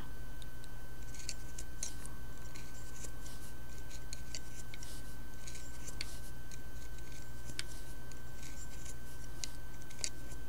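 Small irregular clicks and scrapes of a loom-knitting hook working yarn loops off the pegs of a wooden knitting loom, the loops being lifted off one by one for the bind-off. A steady thin whine and low hum run underneath.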